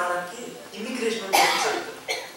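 A man speaking, broken by a short harsh vocal burst about one and a half seconds in.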